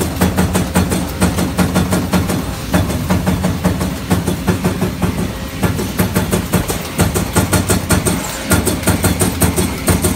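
Industrial shop machinery running with a steady low hum and a fast, regular knocking, about three to four knocks a second.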